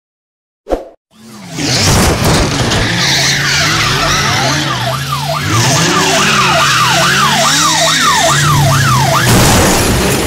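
A short sound-effect burst about a second in, then a loud car chase sound effect: engine revving with tyre squeal and a police siren sweeping up and down about twice a second. Near the end the siren stops as a crash sounds.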